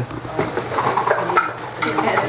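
Gift wrap and cardboard boxes rustling and scraping as they are handled, with faint voices in the background.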